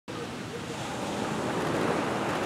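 Ocean surf washing onto a sandy beach: a steady rushing noise that grows gradually louder.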